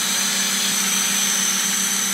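Vacuum slab lifter's pump running steadily: a hiss with a low hum and a thin high whine.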